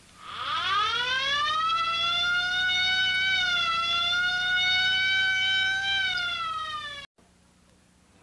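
Cartoon ambulance siren sound effect: one long wail that rises in pitch at the start, holds nearly steady, then sinks slightly before cutting off abruptly about seven seconds in.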